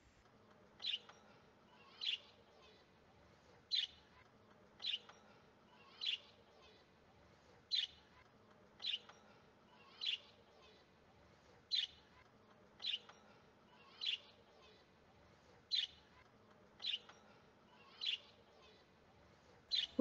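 A bird chirping: a short, high chirp repeated about once a second, some fifteen times, with near silence between.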